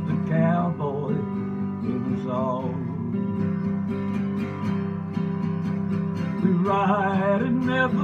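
Epiphone acoustic guitar strummed steadily, with a man singing wavering held notes at the start, briefly around two seconds in, and again near the end.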